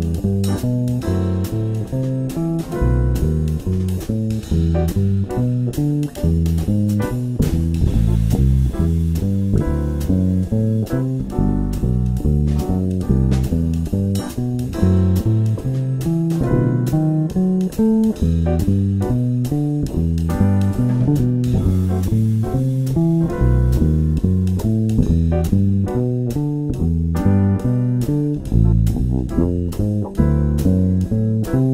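Electric bass guitar played solo, plucked fingerstyle: a steady stream of single notes running through the arpeggio notes of each chord in the tune's progression, several notes a second.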